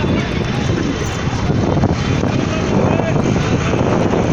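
Heavy tractor engines running in a steady loud drone, with people's voices over them.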